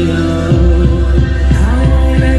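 Loud live band music played through a PA. A deep held bass note shifts lower about half a second in, then a steady low beat of about three strikes a second carries on.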